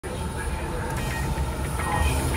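Steady low rumble of an airport escalator running, heard from on board.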